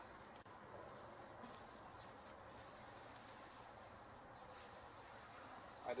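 Faint, steady high-pitched insect trill, typical of crickets, over a quiet outdoor background. There is a faint click about half a second in and a soft brief rustle a little past four seconds.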